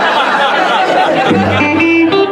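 A live band starting a blues-rock song: electric guitar playing, with a steady bass note coming in about a second and a half in.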